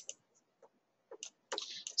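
A few faint, scattered clicks from a stylus tapping on a pen tablet during handwriting, irregular and spread over about a second and a half.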